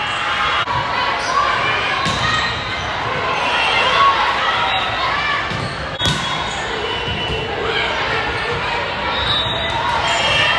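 Volleyball being struck during a rally: a few sharp smacks of hand on ball, the loudest about six seconds in, over steady chatter of players and spectators.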